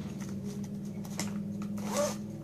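A steady low hum, with a few faint soft ticks of handling about a second in.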